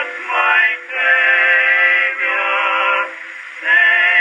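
Male vocal quartet singing a hymn from an acoustically recorded 1908 Victor shellac disc, played on a 1914 Victor-Victrola VI acoustic phonograph. The voices come through in a narrow middle range with no deep bass or high treble, and break briefly between phrases about three seconds in.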